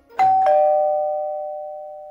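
A two-note ding-dong chime over the end logo: a higher note, then a lower note a quarter second later, both ringing on and slowly fading.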